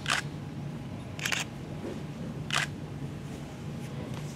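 Three short camera shutter clicks, about a second and a quarter apart, over a faint low steady hum.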